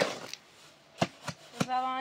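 Shovel striking and scraping the pan of a wheelbarrow while mixing cement, with three sharp strikes in the second half. A brief voice sounds at the start and a held vocal note near the end.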